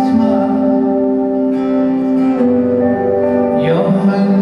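A live band playing an instrumental passage with guitar to the fore, holding sustained chords that change about halfway through, with a sliding note near the end.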